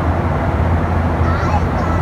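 Steady low rumble of an airliner cabin, the noise of the jet engines and airflow, with faint voices over it.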